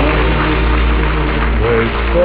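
Orchestra playing the show's closing music in held chords, with a new note entering near the end. A steady low hum from the old broadcast recording runs underneath.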